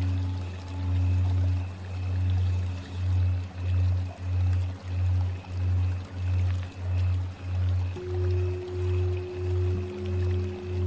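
Meditative ambient music: a low drone pulsing about one and a half times a second under steady held tones, with a new, higher held tone entering about eight seconds in.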